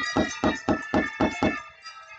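A wooden cempala knocker rapped against the wooden wayang puppet chest (kothak) in a quick run of about eight knocks, about four a second, stopping a little before the end, with steady ringing instrument tones underneath. This knocking (dhodhogan) is the dalang's signal to the gamelan players.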